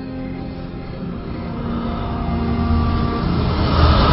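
Sustained soundtrack music, joined from about a second in by a rising rush of noise with a deep rumble that grows steadily louder: a swelling whoosh effect leading into a scene change.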